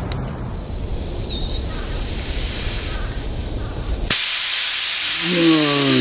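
A low rumble, then about four seconds in the nail comes free of the punctured Tesla tire and compressed air rushes out of the hole in a sudden, loud, steady hiss.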